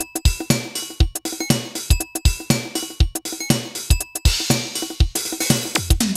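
Korg Electribe SX sampler playing a sampled drum-machine pattern straight from its output with no effects. It is a steady beat of kick drum hits, sharp hi-hat-like ticks and short pitched metallic hits, with a longer cymbal-like wash about four seconds in.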